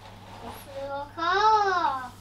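A young child's voice: a brief faint sound, then one drawn-out high call in the second half whose pitch rises and then falls.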